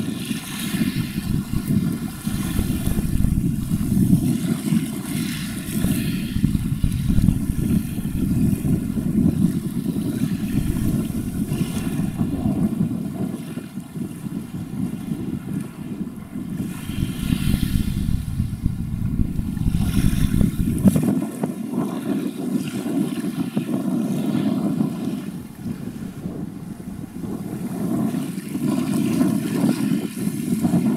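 Low, steady rumble of a large container ship under way, passing close by, with faint steady mechanical tones above it. Wind buffets the microphone, and the deepest part of the rumble drops away about two-thirds of the way through.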